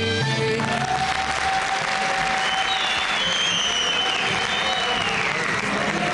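A song with singing and traditional instruments ends about half a second in, and a large audience breaks into applause. A few held tones and high gliding notes sound over the clapping.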